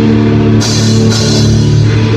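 A rock band playing live in a small room: electric guitars holding low sustained chords over a drum kit, with two cymbal crashes about half a second and a second in.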